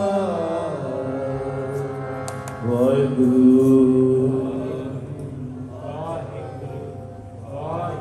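Harmonium with male voices chanting the closing phrase of a Sikh kirtan hymn. The voices slide down at the start, then hold one long note from about three seconds in, and fade to quieter phrases near the end.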